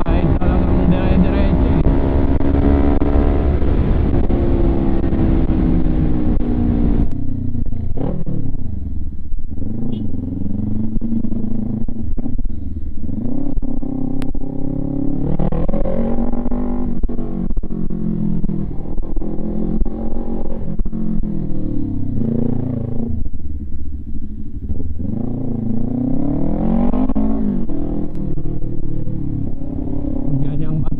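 Kawasaki Ninja 400 parallel-twin engine through an HGM Performance aftermarket exhaust, on the move. For the first seven seconds it runs at steady high revs with a strong rush of wind. After that the pitch rises and falls again and again as the throttle is opened and closed.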